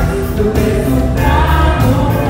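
Live band music with several voices singing together over a steady drum beat and bass.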